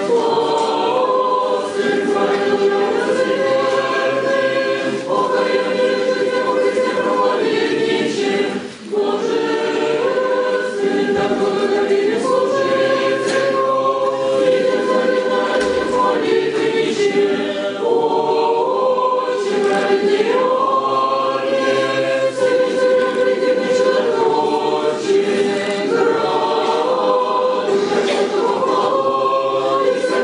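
Orthodox church choir singing a liturgical hymn a cappella in sustained chords that move in steps from note to note, with a short pause for breath about nine seconds in.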